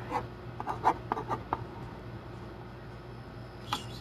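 Hand drawing on paper: several short scratchy strokes in the first second and a half, then lighter, quieter rubbing of the drawing tip on the paper.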